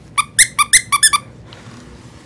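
Squeakers inside the plush legs of a Rockabye rocking caterpillar toy, squeezed by hand in a quick run of about six short, high squeaks within the first second or so.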